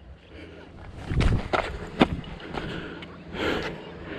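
Footsteps crunching irregularly over stony ground, with a few sharp clicks, the sharpest about two seconds in.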